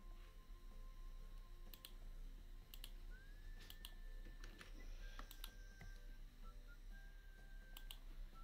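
Faint, sparse clicks of a computer mouse, roughly one a second at uneven spacing, over a low steady hum and a faint thin whine.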